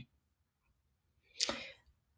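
Near silence, broken by one short breathy whoosh about one and a half seconds in, with a faint tick at the very start. The whoosh fits a quick breath taken between sentences.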